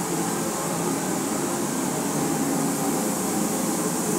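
Steady rushing noise of a ventilation fan running in a paint shop, constant and unchanging.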